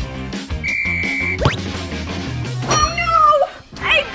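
Background music with a short, steady, whistle-like tone about a second in, followed by a quick rising slide sound effect. A brief wavering pitched sound comes near the end.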